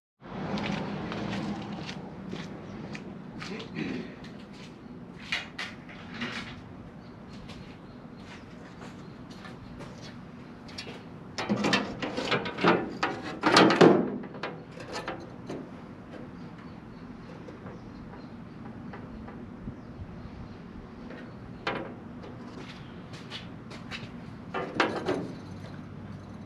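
A thin sheet-metal panel is handled and pressed into place against a car body. It gives scattered knocks, scrapes and rattles, loudest in a cluster about twelve to fourteen seconds in.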